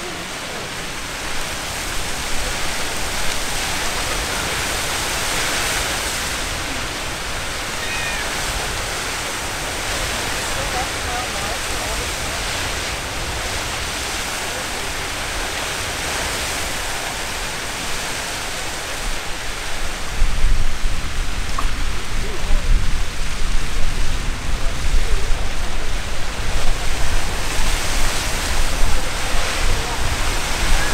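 Castle Geyser erupting in its water phase: a steady rush of water and steam jetting from its cone. About two-thirds of the way through, a low rumble comes in and the rush turns louder and gustier.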